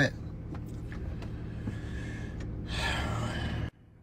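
Steady low rumble inside a car's cabin, with a heavy breath out about three seconds in. The sound cuts off abruptly near the end.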